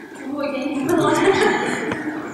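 Indistinct speech from the audience: a woman's voice answering from the room, away from the microphone, blended with other students' voices.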